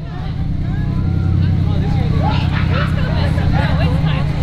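Steady low rumble of an idling fire engine, with spectators chattering over it, fading up over the first second.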